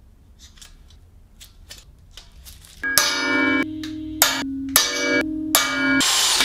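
Faint ticks and taps at first, then, from about three seconds in, a cordless drill boring into a steel box-section rail: a loud, steady, ringing whine broken into several short stretches.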